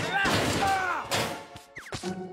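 Cartoon slapstick crash and clatter sound effects of a toaster and frying pan being fumbled, starting suddenly with a second crash about a second in, mixed with a character's cry over background music.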